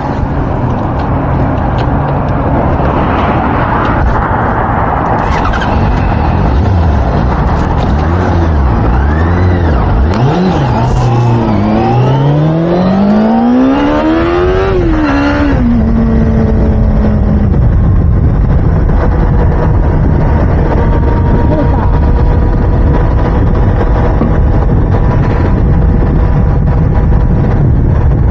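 Heavy, steady low rumble at the camera's microphone. A racing vehicle's engine is heard: its pitch wavers, then rises steeply about twelve seconds in, drops sharply as it passes, and holds steady a few seconds before fading.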